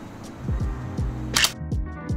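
Background music with a steady drum beat, and a single camera shutter click about one and a half seconds in.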